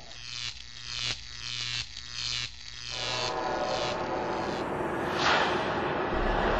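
Synthesized electronic intro sounds: a run of repeating swooshes about every two-thirds of a second over a low hum, then a dense hissing wash that swells about five seconds in.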